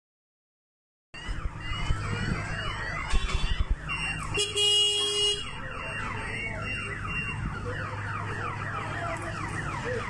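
A car alarm sounding, starting about a second in: a tone that sweeps downward over and over in quick repeats, with a brief steady tone about halfway through.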